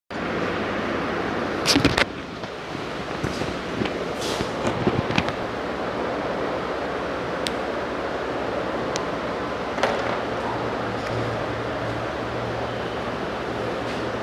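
Steady room hiss with a few sharp knocks and clicks, the loudest pair about two seconds in and a scatter of smaller ones over the next few seconds.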